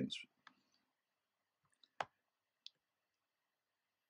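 A few short, isolated clicks of a computer's click button as an editing clip is selected, the loudest about two seconds in, with near silence between them.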